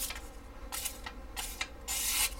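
Large hollow-ground fixed-blade knife slicing through a strip of paper: a few short, crisp cuts, then a longer slice starting near the end, as a test of the factory edge.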